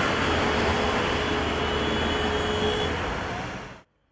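City street traffic: a steady rush of passing cars and buses, fading out and cutting off near the end.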